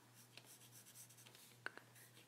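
Faint scratching of a graphite pencil drawing strokes on watercolor paper, with two short ticks near the end.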